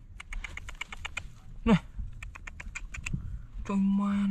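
Fingers scraping and raking through dry, stony soil: a quick run of small clicks and crunches of grit and pebbles, dying away about three seconds in.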